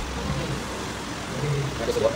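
Café room noise: a steady low hum, with quiet murmured voices in the second half.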